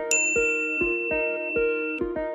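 A bright chime sound effect strikes once just after the start and rings on as a single high tone to the end. It plays over background music of plucked, guitar-like notes in a steady beat.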